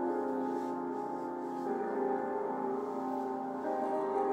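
Sustained, mellow chords playing from an Akai MPC Live II, with no drums yet. The chord changes about one and a half seconds in.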